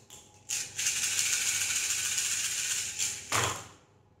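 Small divination pieces shaken together in cupped hands, a steady rattle lasting about three seconds, ending in a louder clatter near the end as they are cast onto the table.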